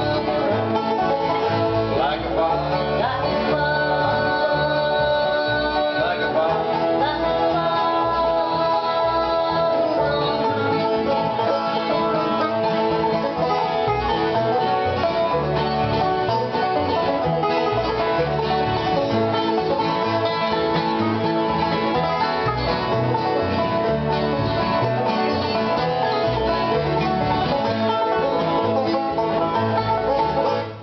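Small acoustic bluegrass band playing steadily on acoustic guitars, a picked string instrument and upright bass.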